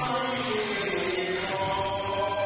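Cantonese opera (yuequ) singing of a melodic line with Chinese instrumental accompaniment. The held notes slide downward, and a new note enters near the end.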